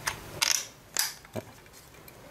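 A few sharp plastic clicks and knocks as a plastic battery adapter is handled and pressed onto the battery mount of a Ryobi One+ reciprocating saw, the loudest about a second in.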